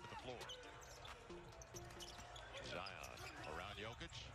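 Faint live game sound from a basketball broadcast: a ball bouncing on the hardwood court amid scattered short sharp sounds and distant voices.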